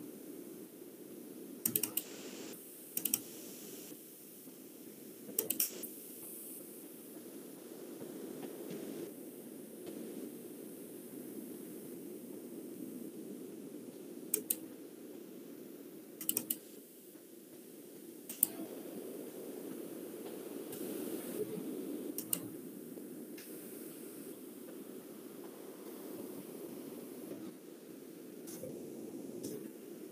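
Scattered clicks at a computer, a few at a time with long gaps between them, over a steady hum of background noise.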